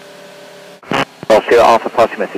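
A steady hum with a few held tones, then about a second in a controller's voice comes over the aircraft radio calling 'Golf Sierra Alpha, pass your message'.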